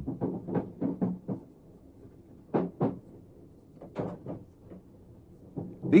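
Power controller handle in the cab of a thyristor-controlled electric multiple unit being moved back through its notches: a series of soft clicks and knocks, with two sharper ones about two and a half seconds in and more around four seconds, over faint steady cab noise.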